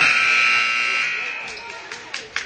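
Gymnasium scoreboard buzzer sounding with a steady tone that starts abruptly, then fades out after about a second and a half, over crowd chatter.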